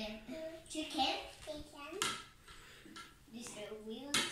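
Children's voices talking softly, with a single sharp knock about halfway through.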